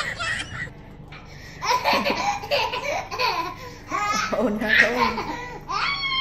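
A baby laughing, with a woman laughing along, in two runs of quick bursts with a short pause between them.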